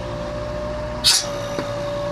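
An ambulance's suction vacuum pump running with a steady hum and a constant mid-pitched whine, with one short hiss about a second in.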